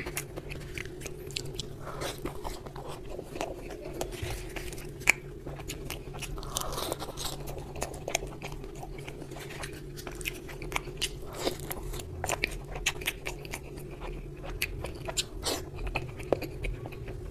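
Close-miked eating sounds of a man chewing a hand-fed mouthful of spicy egg curry and green chilli: wet mouth clicks and smacks with crunches, irregular and continuous, over a steady low hum.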